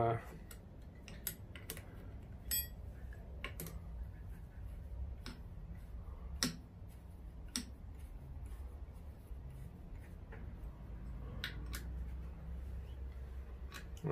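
Hex key working socket-head screws into a mini mill's Y-axis ball-screw bracket: scattered light metallic clicks and ticks of the steel key against the screws and the bracket, over a low steady hum.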